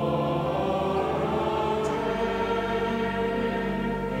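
Church choir singing a slow liturgical chant, accompanied by a pipe organ holding sustained chords; the organ's bass note changes about two seconds in.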